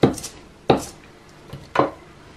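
Three short, sharp knocks of hard objects on a countertop, one at the start, one under a second in and one near the end, as a small hand roller with a wooden handle is put down.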